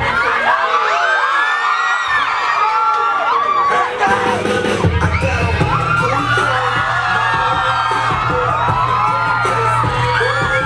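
A large crowd cheering and yelling, many high voices at once. The bass of dance music comes in about four seconds in and runs under the cheering.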